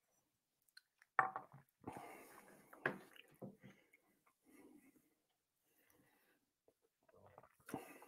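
Faint mouth sounds of a man sipping and tasting whiskey, a few short soft sounds in the first half.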